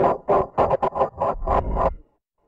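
Harsh, effects-distorted logo audio: a loud, choppy burst with a steady buzzing tone under noisy hash. It starts abruptly and cuts off suddenly after about two seconds.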